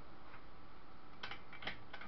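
A few light clicks over a steady low hiss, a bicycle's front V-brake being worked by hand, the clicks coming about a second in. One brake arm moves while the other barely moves: the springs need adjusting.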